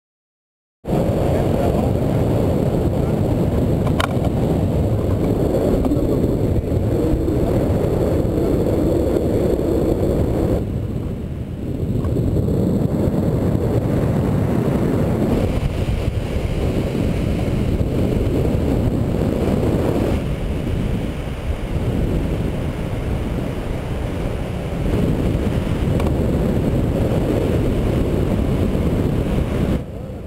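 Wind buffeting a pole-mounted GoPro's microphone in tandem paraglider flight: a loud, steady low rumble that starts abruptly about a second in and eases briefly near the middle.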